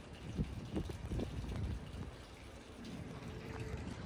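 River water lapping and sloshing against a dock and its pilings, in small irregular splashes.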